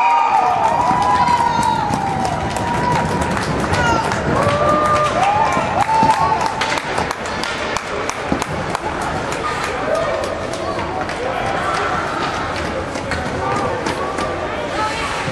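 Young players' high voices shouting and cheering a goal, with many sharp clicks and clacks of hockey sticks and skates on the ice.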